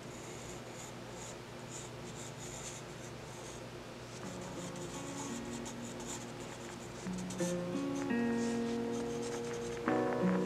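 Graphite pencil scratching across a small paper card in quick, uneven sketching strokes. Background music with plucked notes comes in about halfway through and grows louder near the end.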